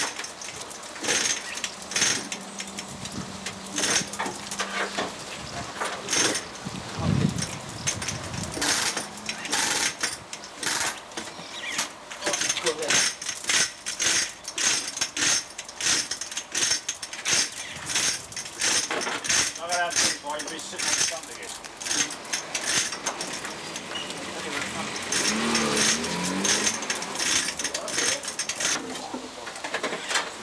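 Irregular metallic clinks and knocks as a car engine is manoeuvred into its engine bay, the clicks coming thick and fast through the second half.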